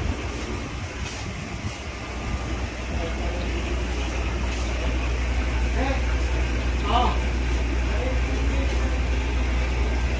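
Steady low background rumble with faint, distant voices.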